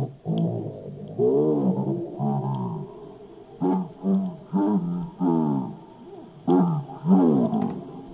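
Recorded Italian speech played back from a cassette on a Philips radio-cassette recorder, slowed down by a speed potentiometer added to the player. The voice comes out deep and drawn out, its pitch sagging and rising in slow arcs, in several phrases with short pauses between them.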